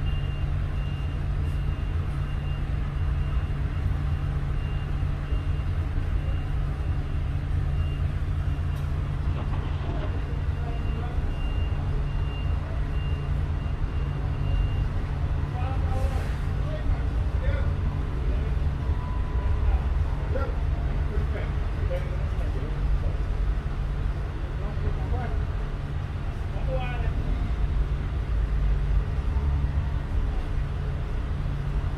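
Petrol-station fuel dispenser running as it pumps gasoline into a car's tank, a steady low hum, with a faint high tone that stops about halfway through.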